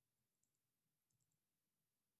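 Near silence, with a few very faint clicks about half a second and a second in.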